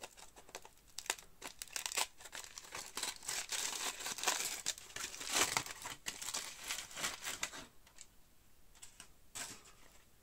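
Aluminium foil wrapping crinkling as it is pulled open and peeled off by hand, in dense irregular bursts that fade after about eight seconds, with one more rustle near the end.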